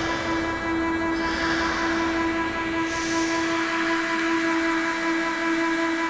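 Ambient electronic music: a held synth chord of several steady tones, with noise sweeps swelling and fading over it and no beat.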